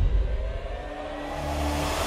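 Car engine running and picking up speed, with a slowly rising tone over a low rumble.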